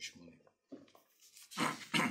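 Brief fragments of a man's voice, then a short rustle of thin Bible pages being turned about one and a half seconds in.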